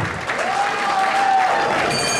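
Crowd applauding, with one long held note of reedy Muay Thai ring music over it, starting about half a second in and lasting about a second.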